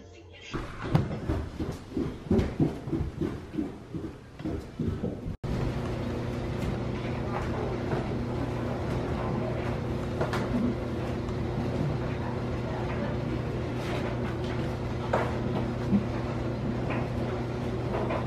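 Irregular knocks and clatter for the first few seconds, then a laundry machine running with a low, steady hum, broken by occasional light clicks and knocks as laundry and a plastic basket are handled.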